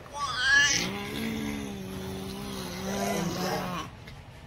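Horror film sound from a television: a short, high wavering cry about a quarter-second in, then a long, low, steady held vocal tone lasting about three seconds.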